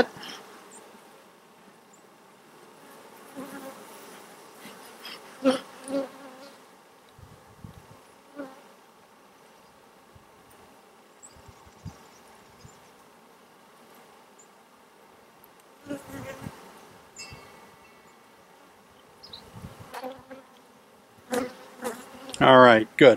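Honey bees buzzing steadily over an open hive box, with a few brief knocks as the wooden frames are worked with a hive tool.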